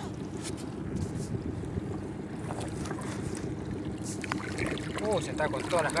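Wind on the microphone over open water aboard a small boat, with a faint steady low hum underneath and a few light knocks of handling. A man's voice comes in near the end.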